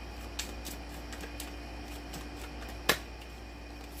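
Tarot cards being handled and drawn from the deck: soft scattered ticks of card on card, with one sharp snap of a card nearly three seconds in, over a steady low hum.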